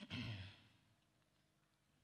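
A man's short sigh-like vocal exhale into a microphone, about half a second long with a falling pitch, followed by near silence.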